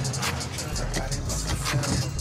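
Car engine running, heard from inside the cabin, with background music over it.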